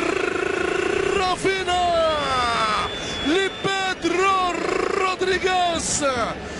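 Male Arabic football commentator's voice in long, drawn-out excited cries that slide up and down in pitch, with a wavering trill at the start, celebrating a goal.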